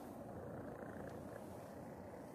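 Domestic cat purring steadily, a low even rumble.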